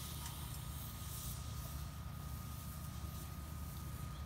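BioLite wood-burning camp stove running with its fan on and a pot at a hard boil: a steady low rumble and hiss with a faint constant high whine.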